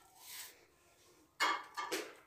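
Faint handling noises of a ceramic mug and a steel cooking pot: a soft rub just after the start, then a short clatter with a slight ring about one and a half seconds in.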